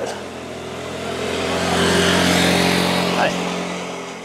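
Motor scooter overtaking a bicycle: its engine hum swells to a peak a little past halfway, then fades as it pulls ahead.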